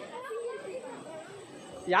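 Voices of people chatting at a distance, then a man's voice close by starting just at the end.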